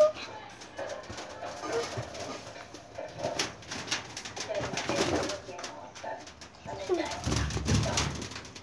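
A young girl laughing and shrieking in play: short, high cries with gaps between them.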